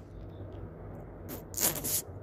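A steady low hum from a home microphone in a quiet room. Near the end comes a short, sharp intake of breath as the man gets ready to speak.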